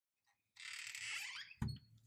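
A front door being opened: about a second of scraping, squeaky noise, then a single thunk.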